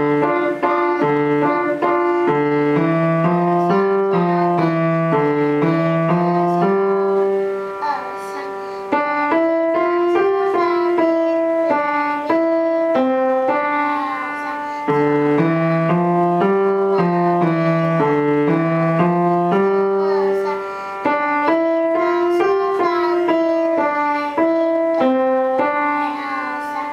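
Upright piano played with both hands: a simple beginner's piece, a low accompaniment under a single-note melody. There are short breaks between phrases, and the opening phrase comes round again about halfway through.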